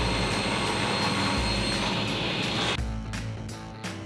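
Table saw running and cutting plywood, a dense steady noise that cuts off suddenly about three seconds in. Background music with a steady beat plays under it and carries on alone afterwards.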